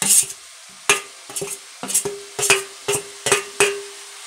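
A steel spoon stirring grated coconut into potatoes in a frying pan, knocking and scraping against the pan about eight times at an irregular pace, with a faint sizzle beneath.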